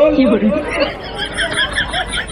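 Speech only: men talking, one voice amplified through a stage microphone, with overlapping chatter.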